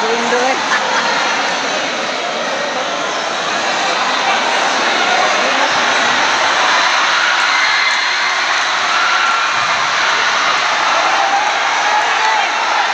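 Crowd of spectators in a large hall making a loud, steady din of many voices shouting and talking at once, with no single voice standing out.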